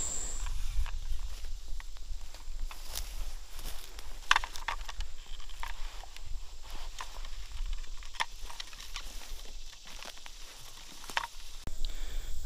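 Irregular crackling and snapping of dry leaves and twigs, made by someone moving through forest undergrowth, over a steady low rumble on the microphone.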